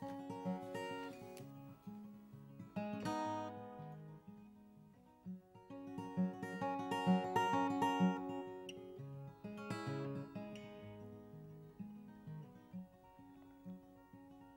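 Solo acoustic guitar fingerpicked, playing a slow instrumental introduction of ringing single notes and chords that swell and thin out, quieter near the end.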